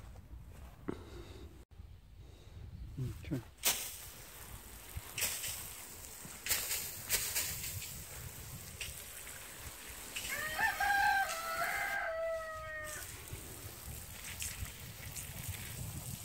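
A rooster crows once, a single long crow of about three seconds that starts about ten seconds in. Before it come a few sharp clicks.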